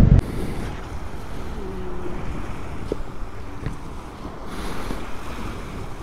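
Wind rushing over the microphone, a steady noise with no engine running.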